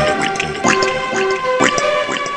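Electronic dance track blending techno, house and trap, in a stretch without the kick drum: short pitched synth notes over held synth tones.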